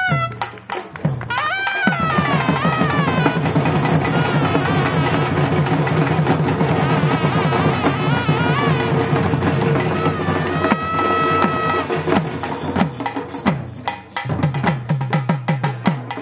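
Tamil folk music for karagattam: a nadaswaram-type double-reed pipe plays a bending, ornamented melody over fast barrel-drum drumming with rolls. The drumming thins out about thirteen seconds in, then picks up again.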